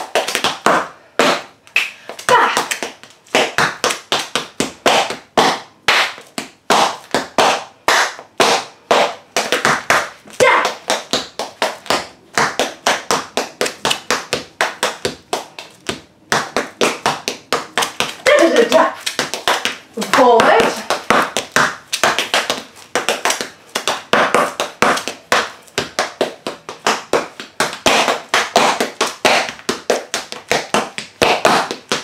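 Metal taps on tap shoes striking a tiled floor in a fast, continuous run of sharp clicks as a tap routine is danced. A voice sounds briefly about eighteen to twenty-one seconds in.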